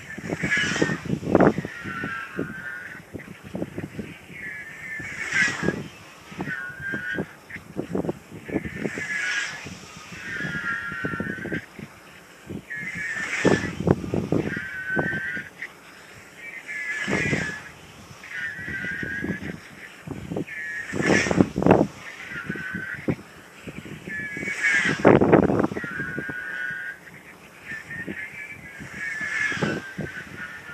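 Radio-control glider dynamic soaring at high speed, passing close about every four seconds. Each pass is a loud whoosh with a whistling tone that drops in pitch as the glider goes by.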